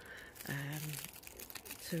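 Thin clear plastic bag of bitter gourd seeds crinkling in short stretches as fingers squeeze and turn it, either side of a brief spoken 'um'.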